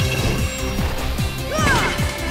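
Cartoon soundtrack: background music with a crashing sound effect at the start as a wax honeycomb cell cap bursts open, then gliding, swooping effects near the end.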